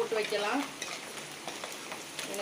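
Garlic cloves sizzling in hot oil in a clay pot, stirred with a steel ladle that clicks and scrapes against the pot. A voice trails off in the first half-second.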